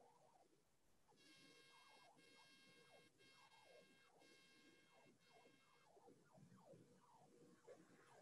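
Near silence, with a faint tone rich in overtones that starts about a second in, is briefly broken about once a second, and stops about two seconds before the end.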